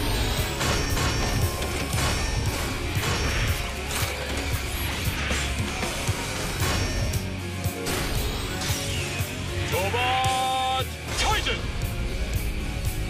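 Cartoon robot-combining sequence: driving music with a heavy beat under a series of sharp metallic clanks as parts lock together. About ten seconds in, a rising tone climbs and then holds.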